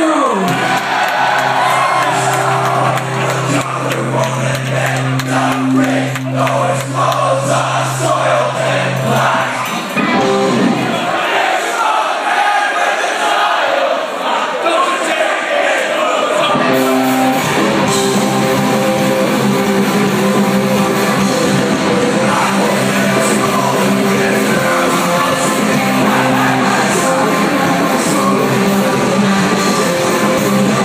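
Live punk rock band playing in a large hall, with crowd shouting and singing along. A held low note runs for the first ten seconds, the bass drops out for a few seconds, and the full band comes in about seventeen seconds in.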